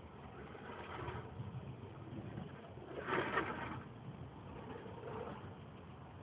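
A car driving on a snow-covered road, heard from inside the cabin: a steady low rumble of engine and tyres, with a brief louder rush of noise about three seconds in.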